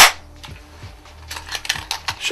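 Clear plastic Cybergun Colt 1911 Double Eagle spring-powered BB pistol firing once: a single sharp, loud snap. About a second and a half later, a run of light plastic clicks and rattles as the pistol is handled.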